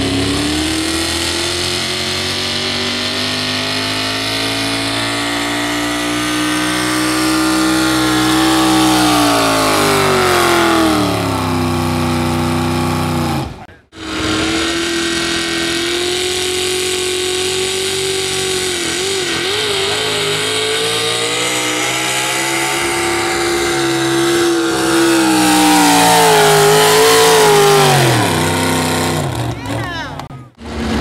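Modified pickup truck pulling a weight-transfer sled, its engine held at full throttle at a high, steady pitch that then falls away as the pull ends. The sound cuts sharply about halfway through to a second pickup's pull, again high-revving at a steady pitch that wavers briefly and drops off near the end.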